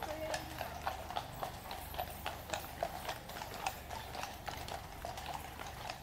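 Hooves of a troop of Household Cavalry horses clip-clopping at a walk on a tarmac road, many irregular, overlapping clops.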